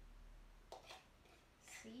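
Near silence, with two faint clicks of a metal spoon against a plastic jug about three quarters of a second in, as half-melted ice cream is scraped out into a bowl.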